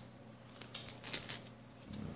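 Clear plastic outer sleeve of an LP crinkling faintly in the hands as the album is turned over, with a few short crackles around the middle.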